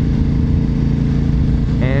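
Honda RC51's 1000 cc V-twin engine running at a steady cruise, an even drone with no change in pitch.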